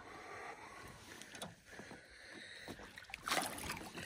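Faint lapping water and small knocks against the boat, then about three seconds in a short splash as a landing net scoops a hooked bass out of the water.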